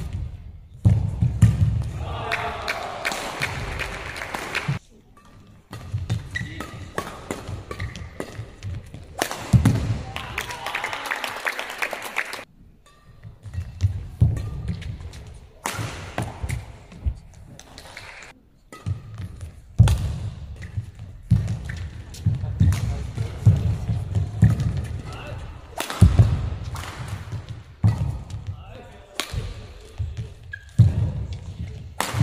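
Badminton singles rallies: sharp racket strikes on the shuttlecock and players' feet thudding as they lunge and land on the court mat, with short lulls between points.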